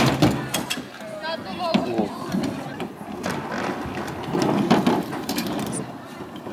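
Stunt scooter riding on a skate ramp: wheels rolling and the scooter clattering, with a string of sharp clicks and knocks. Children's voices in the background.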